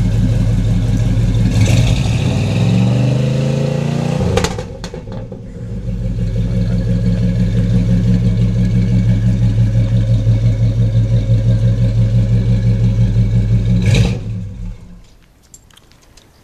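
1974 Chevrolet Monte Carlo's 350 cubic-inch V8, through true dual exhausts with Flowmaster Super 44 mufflers and no catalytic converter, idling and then revved once about two seconds in, the pitch rising and dropping back about four seconds in. It then settles into a steady, evenly pulsing idle and is shut off about fourteen seconds in.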